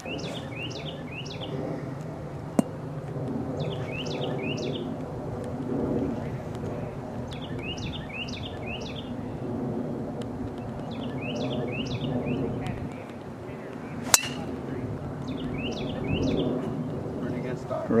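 A songbird singing short phrases of three or four quick, down-slurred notes, repeated every two to four seconds, over a low outdoor murmur. A single sharp click sounds about fourteen seconds in.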